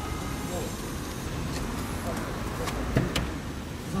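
Low steady rumble of an idling car and street traffic, with a sharp click about three seconds in as the car door is opened.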